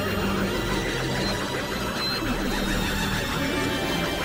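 Experimental electronic noise music: a dense, churning synthesizer texture over steady low drones, holding an even loudness throughout.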